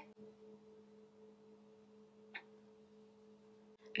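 Near silence: room tone with a faint steady low hum, and one brief faint tick about halfway through.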